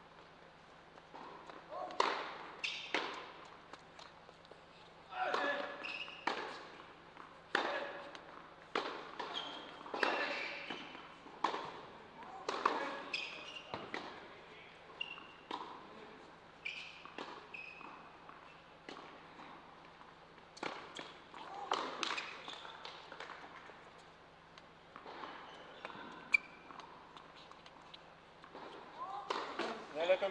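Tennis ball struck by racquets and bouncing on an indoor hard court during a rally: sharp hits every second or so, each ringing out in the hall's echo.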